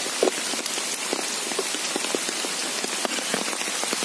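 Rain falling steadily, with many individual drops heard as short scattered ticks. There is one sharper knock just after the start.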